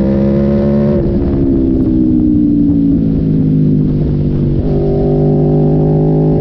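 Sport motorcycle engine heard from onboard at riding speed: its pitch climbs under throttle, drops sharply with an upshift about a second in, sinks slowly for a few seconds, then steps back up with a downshift near the end.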